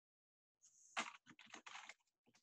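Faint typing on a computer keyboard: a quick run of keystrokes starting about half a second in.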